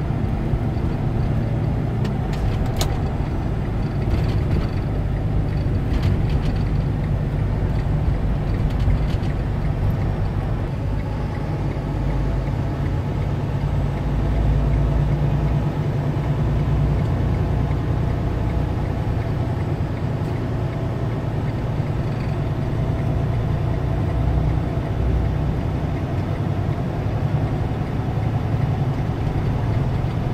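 Semi truck driving, heard from inside the cab: a steady low rumble of diesel engine and road noise.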